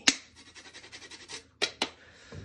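Lime zest being grated on a flat metal hand grater: scratchy rasping strokes of the peel against the blades. A sharp click comes just after the start and is the loudest sound; two more sharp clicks come close together near the end.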